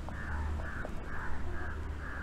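A bird calling outdoors: a quick run of about five short, rough calls, roughly three a second, over a steady low rumble.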